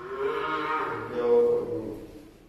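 One long, drawn-out vocal call, loudest about one and a half seconds in, then fading.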